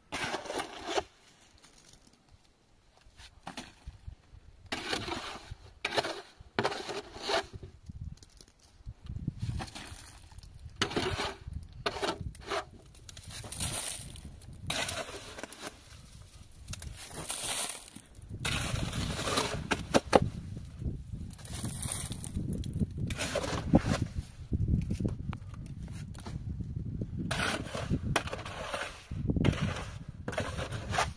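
Shovel scraping and scooping through wet mud plaster in a metal basin, in a run of irregular scrapes and crunches. A low rumble sits under the strokes in the second half.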